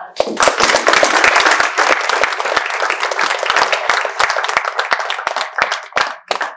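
Audience applauding: many hands clapping together, starting abruptly and thinning out near the end.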